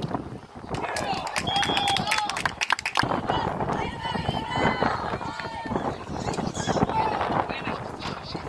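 Spectators and players shouting and calling out across an outdoor football field during a play, with a quick run of sharp knocks and clatter in the first few seconds.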